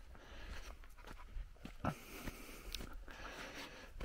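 Quiet background hum with a few faint, brief clicks around the middle.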